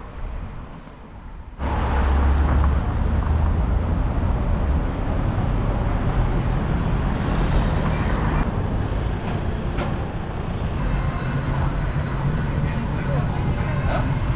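Steady city street noise with road traffic, starting suddenly about a second and a half in with a brief deep rumble, then running on evenly.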